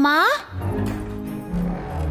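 A child's voice calls once with a sharp upward slide in pitch right at the start, then gives way to background music holding low sustained tones.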